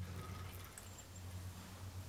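Quiet room tone with a steady low hum and no distinct events.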